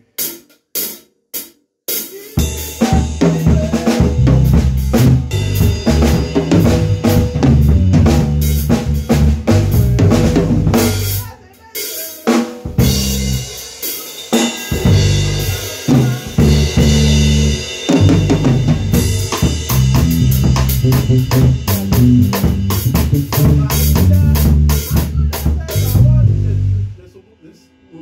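Live band playing in a small room: drum kit and bass guitar, the bass moving through low notes under the drum beat. It opens with a few sharp clicks, breaks off briefly about twelve seconds in, and stops about a second before the end.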